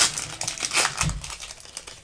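Foil Yu-Gi-Oh booster pack wrapper crinkling in the hands as it is worked open, in irregular sharp crackles, with a brief low bump about a second in.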